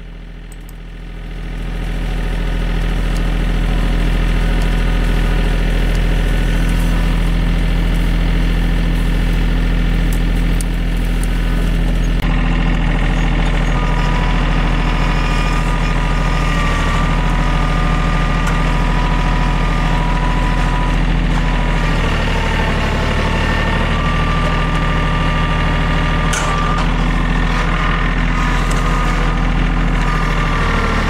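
TYM T413 sub-compact tractor's diesel engine revving up about a second in, then running steadily under throttle. From about twelve seconds in, a wavering whine joins it as the front-loader grapple hydraulics work to scoop and lift a load of grass and brush.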